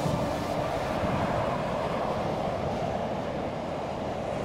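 Motorway traffic: the steady, even tyre and engine noise of cars passing on the carriageway.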